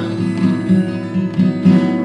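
Music with no singing: a guitar plays a steady rhythm of low notes in a pause between sung lines of the song.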